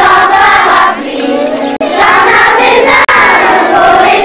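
A group of children singing together, loud. The sound cuts out for an instant twice.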